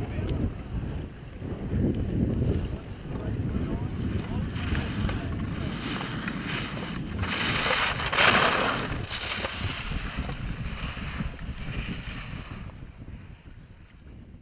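Skis running over snow with wind rushing across the skier's own camera microphone during a training run; the hiss of the skis is loudest about eight seconds in, then fades toward the end.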